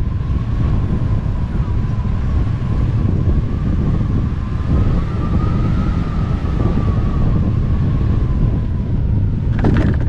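Hang glider in flight on a landing approach: strong wind rushing over the microphone, with a thin whistling tone that rises slightly and falls back. A short sharp noise comes just before the end, as the glider reaches the ground.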